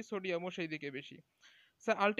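A man lecturing in Bengali, with a short pause just past the middle before he talks on.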